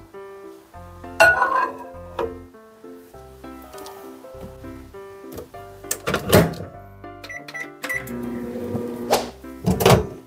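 Old Samsung microwave oven: door thunks, three quick high beeps, about a second of steady running hum, then the door clunking open near the end. Light background music plays throughout.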